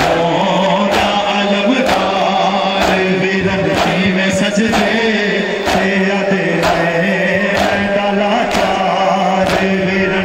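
A crowd of men chanting a Shia mourning noha in unison, with rhythmic chest-beating (matam) striking together about once a second.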